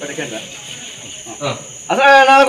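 Crickets chirring in a steady high-pitched drone, with faint voices of people nearby and a short louder sound about one and a half seconds in.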